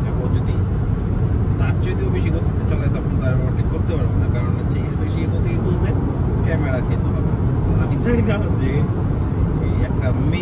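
Steady road, tyre and engine noise heard inside the cabin of a car cruising at about 140 km/h on a highway, a dense low rumble that does not let up. Faint talk sits under it.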